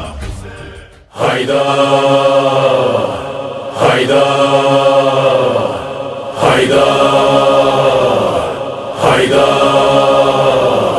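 Chanted voices holding one long pitched note, restarted about every two and a half seconds with a sharp onset that slides down into the held tone. The chanting begins about a second in after a brief dip.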